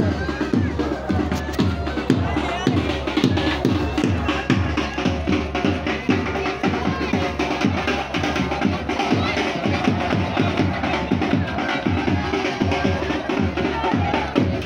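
Wedding band drums beating a fast, steady rhythm, with a crowd of children shouting over it.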